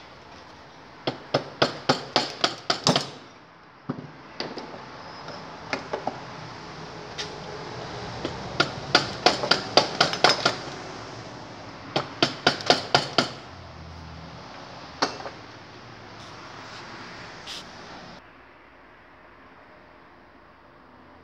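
Three quick runs of sharp metal knocks, about five a second, with a few single knocks between them. They come from a quad bike engine's cylinder being worked loose by hand from a dried-out base gasket that has stuck it in place.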